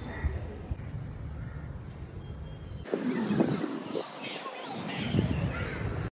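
A steady low outdoor rumble, then about three seconds in the sound changes abruptly to a run of harsh bird calls, several in quick succession.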